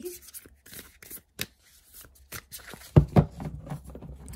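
A deck of tarot cards being shuffled and handled by hand, with short crisp card sounds and a louder thump about three seconds in.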